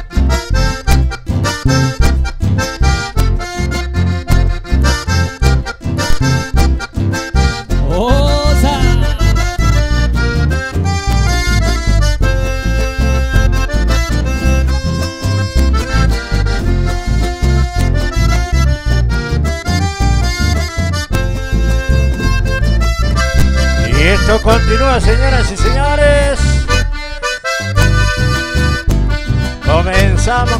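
Button accordion playing a lively instrumental folk tune, backed by acoustic guitar and electric bass keeping a steady beat.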